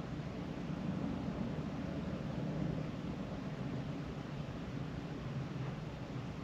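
Steady low hum with an even hiss inside a car cabin, the background noise of the car's running engine or ventilation, holding level without change.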